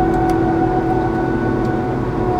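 Claas Jaguar 960 Terra Trac forage harvester running at working revs, heard from inside the cab: a steady high whine over the low rumble of the engine.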